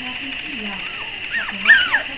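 A four-week-old Zu-Chon puppy whimpering: two short, high cries that slide down in pitch, late in the stretch, the second louder.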